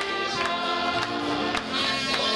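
Gospel song sung by a mixed praise team of women and men into microphones, over instrumental backing with a steady percussive beat.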